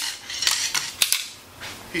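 Sections of a carbon fiber avalanche probe with aluminum ferrules clicking and rattling against each other as the probe is pulled out and extended: several sharp clicks and clatter in the first second or so.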